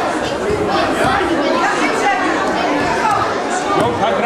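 Steady chatter of many overlapping voices from the spectators in a sports hall, with no one voice standing out.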